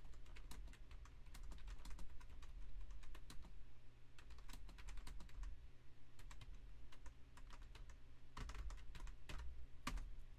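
Typing on a computer keyboard: quick runs of keystrokes, sparser in the middle, with a louder flurry near the end, over a steady low hum.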